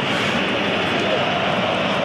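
Steady, even stadium ambience under a football match broadcast, with the commentary paused.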